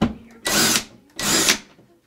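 Power drill run in two short bursts of about half a second each, just after a brief knock.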